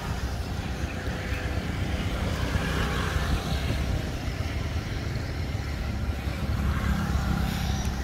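Honda Wave 110 motorbike's small single-cylinder four-stroke engine idling steadily, with an even exhaust pulse.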